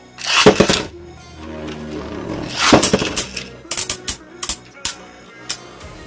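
Cyclone Ragnarok and a right-spin Astral Spriggan prototype Beyblade launched into a plastic stadium: a rush of noise from the launch just after the start, then the tops spinning, with a run of sharp clicks in the second half as they strike each other.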